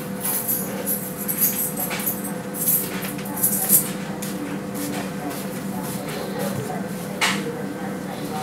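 Heavy hardened-steel CISA padlock handled and turned over in the hands, with scattered light metallic scrapes and clicks in the first few seconds. A sharp knock comes near the end as the lock is set down on a workbench, over a steady low hum.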